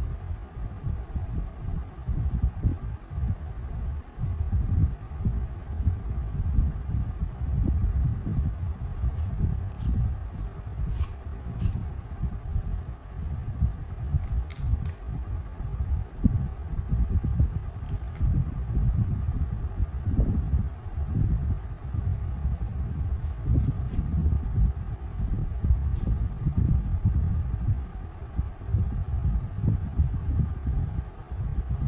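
Crayon rubbing back and forth on paper over a table: a dull, rapidly pulsing scrubbing from quick colouring strokes, with a few light clicks partway through.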